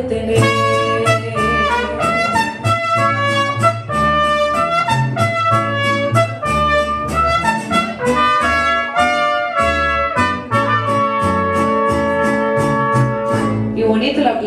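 Mariachi band playing an instrumental passage: trumpets carrying a quick run of short notes over a steady bass line.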